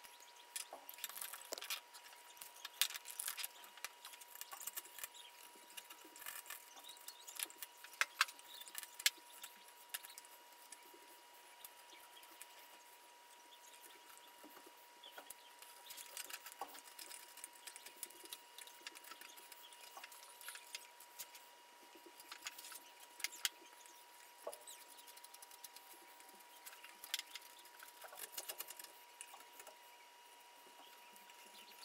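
Faint, irregular scraping and light clicks of a hand chisel paring chips from a wooden saw handle clamped in a vise.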